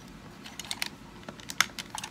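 Light, irregular plastic clicks and taps from a small hard-plastic Transformers toy car being turned over and handled.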